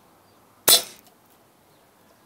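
A single shot from a spring air rifle: one sharp crack about two-thirds of a second in, ringing briefly before it fades.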